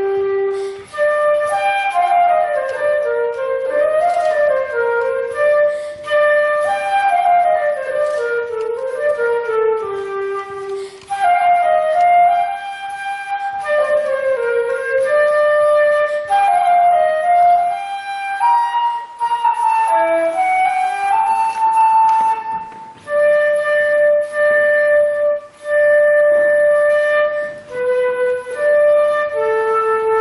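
A solo concert flute plays a melody: quick runs of notes rising and falling, then longer held notes, with short breaks for breath between phrases.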